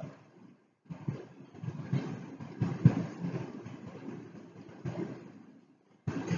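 A low, uneven rumbling noise that starts suddenly about a second in and cuts off shortly before the end.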